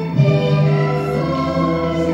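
Choral music: voices singing long held notes over instrumental backing.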